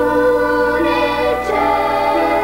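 Choir singing slowly in long, held notes.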